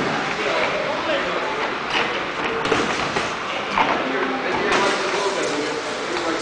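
Indistinct voices in a boxing gym, with scattered sharp knocks and thuds from boxers sparring in the ring.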